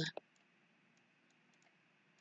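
A single short click of a computer mouse just after the start, then near silence.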